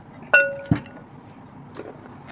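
A dish on the table is struck once, a sharp clink about a third of a second in that rings briefly on a few clear tones. A dull knock follows just after, then faint handling of food and plates.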